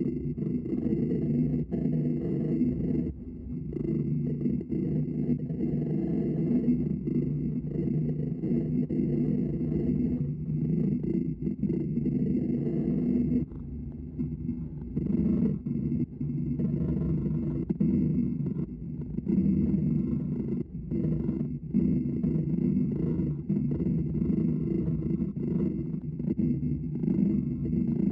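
A gouge cutting into a spinning green pignut hickory bowl blank on a Laguna Revo 18/36 lathe, a rough, continuous cutting noise over the lathe's low hum. It breaks off briefly several times as the tool leaves the wood.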